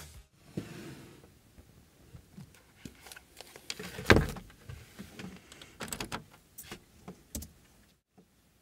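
Hands handling a pair of Adam Audio SP-5 closed-back headphones on a desk: scattered soft knocks, rubs and clicks, the loudest thump about four seconds in.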